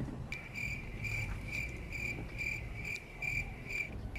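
A cricket singing: a steady high-pitched trill that swells in a regular pulse about twice a second, starting just after the start and stopping shortly before the end.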